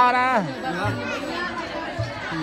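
Several people chattering over background music, one voice loud right at the start and falling in pitch.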